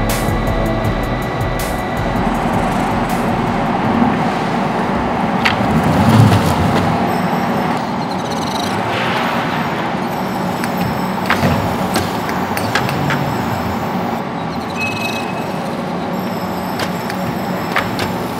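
Steady machine noise from an automated tape-laying head laying fibre tape for sail membranes, with occasional sharp clicks and a swell about six seconds in, under background music.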